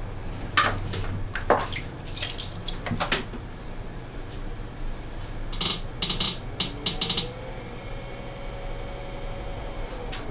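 Wet splashing and dripping of water as clay-covered hands work at a potter's wheel and its water bucket, with a burst of splashes about six to seven seconds in. A faint tone rises and then holds near the end.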